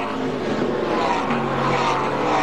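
Engines of a pack of NASCAR stock cars running together, several engine notes falling in pitch as the cars go through a corner, heard through the TV broadcast sound.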